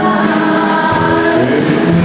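A girl singing into a handheld microphone in long held notes, accompanied on a Casio electronic keyboard, both amplified through a sound system.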